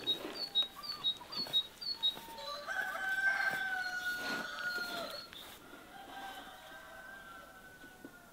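A rooster crowing: one long held crow starting about two and a half seconds in, then a second, fainter crow near the end. In the first two seconds a small bird chirps in quick, evenly spaced repeats.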